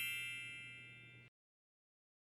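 Tail of a bell-like chime sound effect, many ringing tones fading away over about a second.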